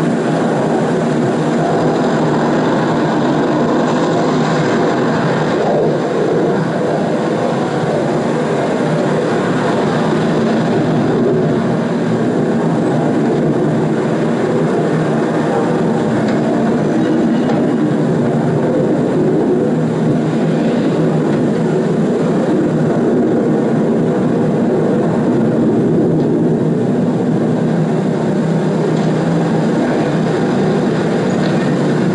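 Steady, loud engine and traffic noise with no break or change.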